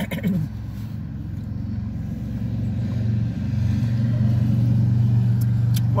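A motor vehicle's engine giving a low, steady hum that grows louder over a few seconds and then holds, heard from inside a car.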